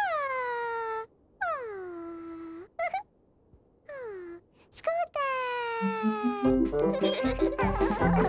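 A high, childlike character voice makes four long wordless calls, each sliding down in pitch, with short chirps between them. About six and a half seconds in, cheerful children's music with a tune and a bass line starts.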